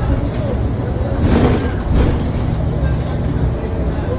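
Cabin noise of a moving New Flyer XDE40 diesel-electric hybrid transit bus: a steady low drivetrain rumble and road noise, swelling louder about a second and a half in.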